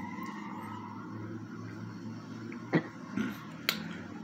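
Quiet room tone with a low steady hum, broken by two short clicks about three quarters of the way through.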